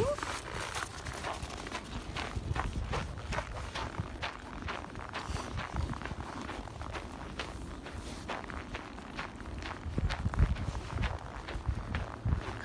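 Footsteps crunching through packed snow at a steady walking pace, a few steps a second, those of the walker and the leashed dog.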